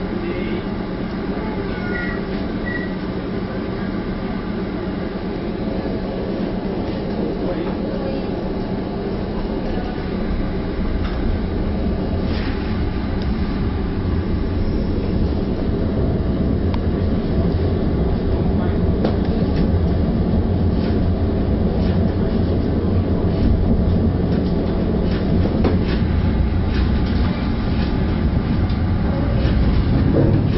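Interior running noise of a Northern Rail Class 333 electric multiple unit gathering speed: a steady hum with several held tones that grows slowly louder, with scattered clicks of the wheels over the rails.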